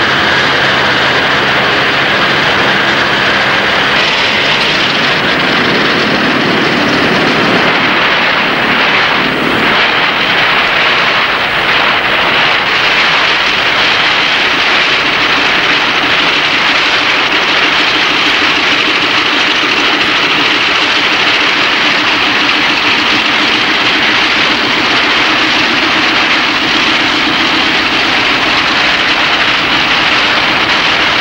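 Loud, steady engine roar with a rushing hiss. A low hum under it drops away about four seconds in.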